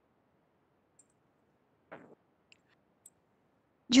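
Near silence with faint background hiss, broken by one short click about two seconds in and a couple of fainter ticks after it.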